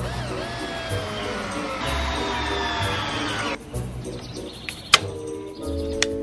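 Cordless drill driving a screw into a 2x4, its motor whine slowly falling in pitch as the screw bites, stopping abruptly about three and a half seconds in. A single sharp snap follows about a second later.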